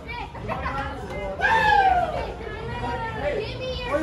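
Excited fans shouting and cheering at the passing hockey players from close range, several voices overlapping, with one loud high shout that falls in pitch about a second and a half in.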